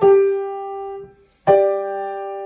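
Upright piano: a single note struck and held for about a second, then released; after a short gap a loud accented chord is struck and left ringing, the loudest chord at the top of the crescendo.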